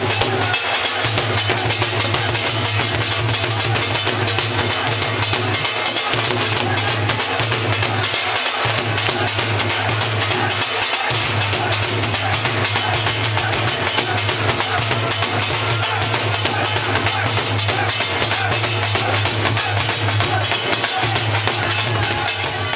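Live dhol drums played in a fast, dense bhangra rhythm, loud and unbroken, with a steady deep bass underneath.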